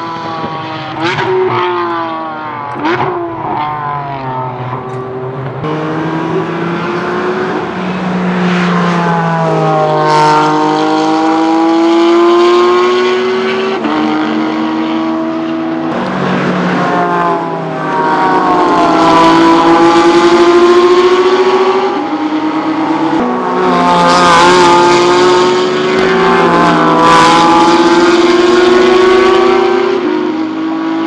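Race car engines: a few short, sharp throttle blips, then hard acceleration through the gears. The pitch climbs and drops suddenly at each quick upshift, with several cars sounding at once in the later part.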